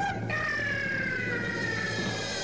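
A held, siren-like tone with overtones that slides slowly lower in pitch. It breaks off for a moment just after it starts, then resumes.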